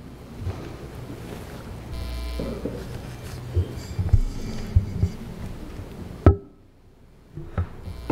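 Open-microphone room noise in a council chamber with a few light knocks and bumps. A little past six seconds a sharp click sounds, and the background drops away for about a second before returning.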